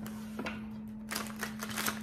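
Tarot cards being handled: one sharp card snap about half a second in, then a quick run of flicks and taps in the second half.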